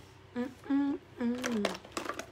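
A woman humming a little tune with her lips sealed around a suction lip-plumper cup: three short notes, the last one sliding down in pitch. A few light clicks come near the end.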